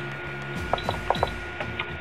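Two short high beeps with light clicks about a second in, from the keypad of a Hyperion EOS 720i Super Duo battery charger as its UP button steps the charge current setting, over faint background music.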